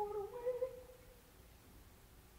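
A soprano singing a soft, unaccompanied phrase of a few held notes that breaks off about two-thirds of a second in, leaving only faint background for the rest.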